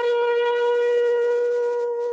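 Radio-drama music bridge: a solo wind instrument holding one long steady note, easing off slightly near the end.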